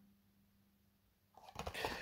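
Near silence with a faint steady hum, then soft handling noises and light clicks starting about a second and a half in.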